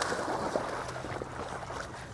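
Pond water sloshing and lapping as a man wades through it with dogs paddling alongside him, growing fainter over the two seconds.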